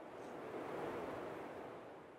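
A soft, wind-like whoosh sound effect that swells to a peak about a second in and then fades away, with no pitch or beat to it.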